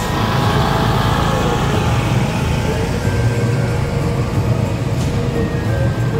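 Steady low engine rumble of slow-moving parade vehicles passing close by, with faint music under it.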